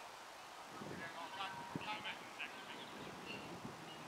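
A few faint, short bird calls in the middle, over quiet outdoor background.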